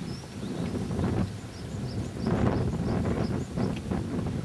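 Wind buffeting the microphone in uneven low rumbles, with a small bird chirping in short high notes about twice a second.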